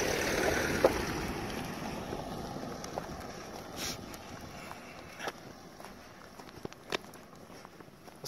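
A car passes close on a gravel track and drives away, its tyre and engine noise loudest at the start and fading steadily over several seconds. A few faint clicks sound in the second half.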